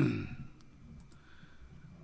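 Handling noise at a studio desk: one sharp knock that dies away within about half a second, followed by a couple of faint clicks.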